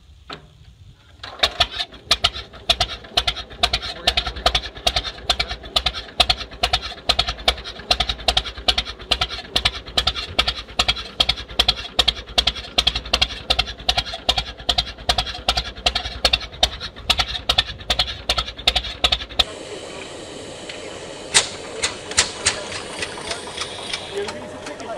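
McCormick-Deering tractor engine catching on the hand crank about a second in, then running with an even, fast beat of exhaust firings. Near the end the sound changes abruptly to a steadier running noise from a different old engine, with a few sharp cracks.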